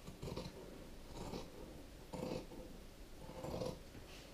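Scissors cutting through quilted fabric and batting in slow, crunchy snips, about one cut a second, four in all, trimming close to the stitching.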